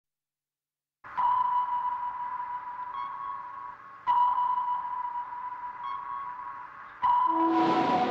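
Naval active sonar pings: three sharp pings about three seconds apart, each a steady ringing tone that fades away. After each of the first two comes a fainter, slightly higher return. Music starts up just after the third ping.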